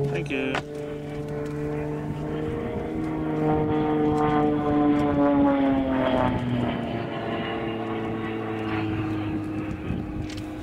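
Propeller-driven aerobatic airplane flying overhead, its engine note rising and falling with power and direction changes through the manoeuvres. There is a quick drop in pitch just after the start, then a slow downward slide over a few seconds before the note steadies.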